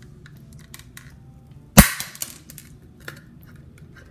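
Handheld hole punch snapping shut once through the wall of a paper cup: a single sharp snap a little under two seconds in, followed by a few faint clicks.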